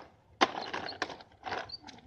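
Small plastic toddler tricycle rolling over concrete pavement: the plastic wheels rattle, with sharp clicks about twice a second as they turn.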